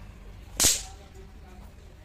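A single sharp firecracker bang a little over half a second in, dying away quickly.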